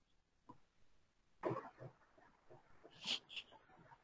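A faint cough about a second and a half in, followed around three seconds by two short hissy sounds.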